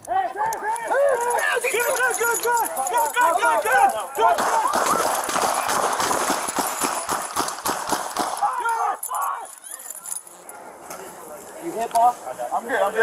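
Several people shouting over one another, then hurried running footsteps and rapid knocks of movement for a few seconds, fading to quieter movement near the end.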